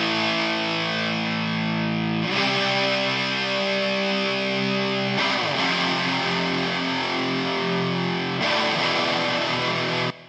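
Distorted electric guitar track playing held chords that change about every three seconds, heard first unprocessed and then through a surgical EQ with narrow notches cutting harsh ringing frequencies around 3 kHz and 5 kHz to make it sound cleaner.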